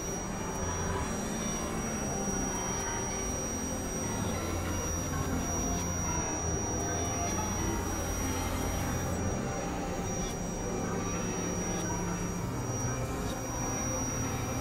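Experimental synthesizer drone music: a dense, noisy wash over low sustained tones, with a thin, steady high-pitched tone held above it.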